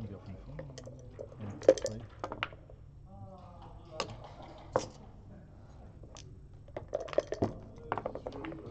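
Hard clacks of backgammon checkers and dice on the board. A quick cluster of clicks comes about two seconds in, two single sharp clacks follow around four to five seconds, and another rattling cluster comes near the end as the dice are gathered with the cup.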